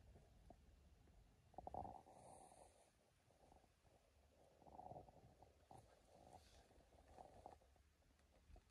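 Near silence: a faint low rumble with a couple of soft swells, about two and five seconds in.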